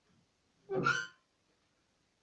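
A single short vocal utterance, one brief word or exclamation lasting under half a second, about three quarters of a second in, in an otherwise quiet room.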